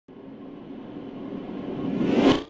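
A swelling whoosh sound effect: a rushing, rumbling noise like a passing aircraft that grows steadily louder.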